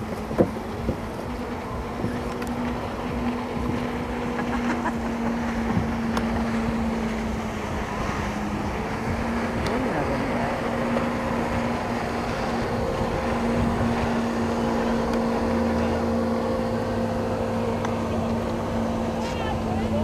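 Jet ski engine running at a steady pitch as it tows an inflatable tube ride at speed across the water, over a rush of water noise.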